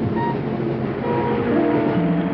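Small jazz group with tenor saxophone and guitar playing the closing bars of the tune, holding long sustained notes and chords.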